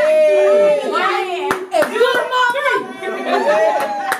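A small group of people talking and cheering over one another after a held sung note at the start, with a sharp hand clap about a second and a half in.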